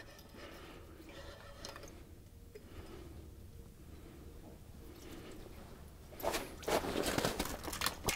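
Handling noise from a fishing rod and reel and rustling of winter clothing: faint scattered ticks and rustles at first, then loud, busy rustling and clattering about six seconds in as he lunges forward, with a short spoken word.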